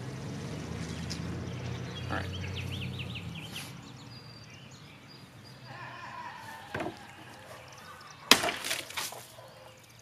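Dao sabre cutting a plastic milk jug: one sharp, loud crack as the blade slices through the jug, followed by a short rattle. A smaller knock comes about a second and a half before it.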